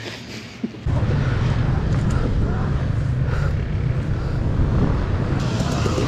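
About a second in, the sound jumps to a dense, steady low rumble of enduro motorcycle engines idling close by in a queue.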